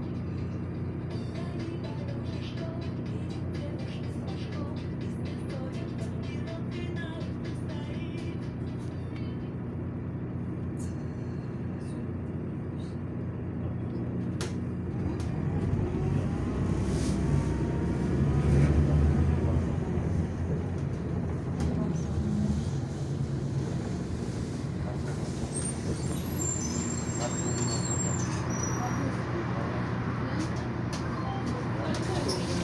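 Cabin sound of a city bus driving: a steady low engine hum with road noise and light rattles. About halfway through the engine note swells and rises in pitch as the bus speeds up, loudest a little past the middle, then settles again.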